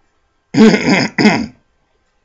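A man clears his throat loudly, in two quick rasps, followed by a brief "um".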